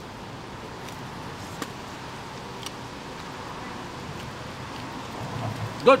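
Steady outdoor street background noise, an even hiss with a few faint clicks, while a man silently chews; near the end a low murmur from him and the word "good".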